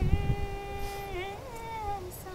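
A woman singing unaccompanied, holding one long note that wavers near its end, then sliding up into a second note that falls away slowly. A few low bumps on the microphone sound at the very start.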